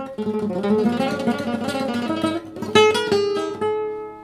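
Solid-wood nylon-string classical guitar in an altered tuning (E B F# D A D, low E dropped to D and G lowered to F#) playing a busy flurry of notes for about two seconds. A chord is then struck a little under three seconds in and left to ring.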